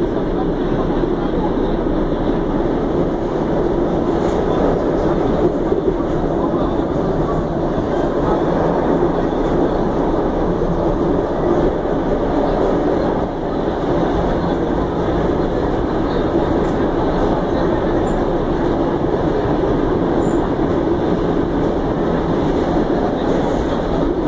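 Buenos Aires Subte Line C subway train running through the tunnel, heard from inside the passenger car as a loud, steady rumble of wheels and running gear.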